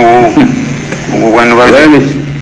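Speech only: a man talking into a microphone.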